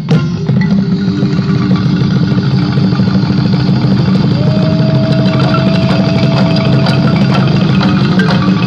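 Balafon and djembe ensemble playing a dense, fast roll of continuous rapid strikes. A long held note sounds over it from about halfway through.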